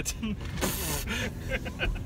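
Soft chuckling and murmured voices from people in a car, over a steady low rumble of the car.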